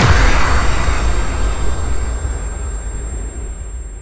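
A deep cinematic boom sound effect hits at the start and its rumble fades away over the next few seconds, the impact of a logo-reveal animation.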